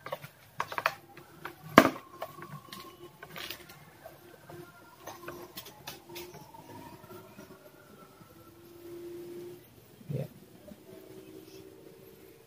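Plastic multimeter test probes and leads being handled, giving a few sharp clicks, the loudest about two seconds in. Faint drawn-out whining tones sound in the background.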